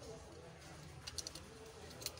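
Faint bird cooing in the background over a low steady hum, with a few light clicks a little past a second in from fingers handling an opened smartphone's frame and parts.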